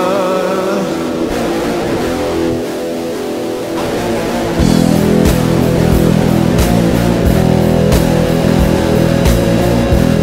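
Instrumental passage of a darkwave rock song led by guitar, with no vocals. About halfway through it swells louder as a fuller low end and a steady beat come in.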